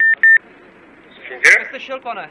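Two short, high beeps from a police two-way radio, followed about a second and a half in by a sharp crackle and a brief burst of voice over the radio.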